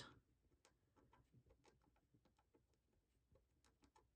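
Near silence, with a scattering of faint small clicks and taps from stickers and paper being handled with tweezers.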